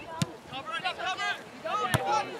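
Two sharp thuds of a soccer ball being kicked, about a second and a half apart, with players' and spectators' voices calling across the field in between.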